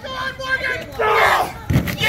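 Spectators shouting and yelling. Near the end comes one heavy thud as a wrestler's body is slammed into a plastic kiddie pool full of cream.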